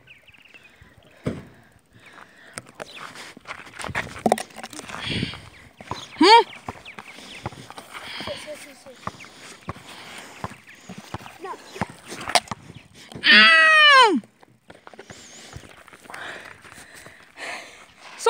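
Rustling and clicks of a phone being handled and carried in the mouth, with short voice sounds and one loud drawn-out shout about 13 seconds in that rises and then falls in pitch.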